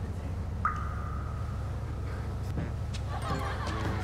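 Steady low hum of a boat's engine, with a sudden high tone about half a second in that holds for about two seconds. Voices and laughter start near the end.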